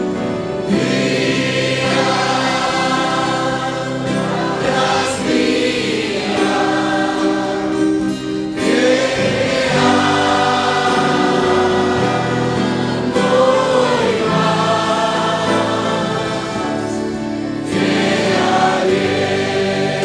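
A congregation singing a worship hymn together, in long sung phrases.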